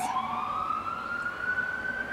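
An emergency vehicle siren in its slow wail, the pitch climbing steadily.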